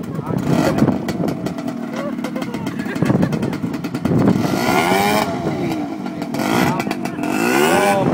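ATV engine revving hard, its pitch rising and falling several times, as the quad works to climb out of a mud hole it is stuck in. The biggest rev swell comes about halfway through, and the engine climbs again near the end.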